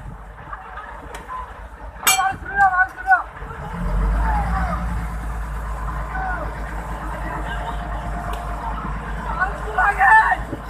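A boat's engine comes up about four seconds in to a loud, steady low drone that runs on under shouting voices.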